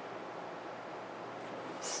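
Steady faint background hiss: room tone, with no distinct sound.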